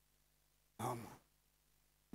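Near silence broken by one short sigh from a man about a second in.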